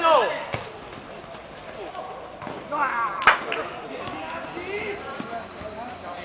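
A football being kicked on a dirt pitch: one sharp kick about three seconds in, with a lighter touch earlier, among shouts from players and onlookers.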